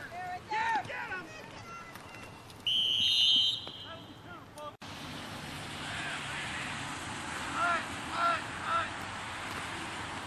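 A referee's whistle blows once, a loud high shrill blast lasting about a second, over scattered shouting from players. Later come three short shouted calls a fraction of a second apart, a snap count at the line of scrimmage, over a steady hiss.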